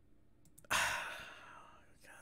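A man's long sigh, breathed out suddenly about two-thirds of a second in and fading over the following second.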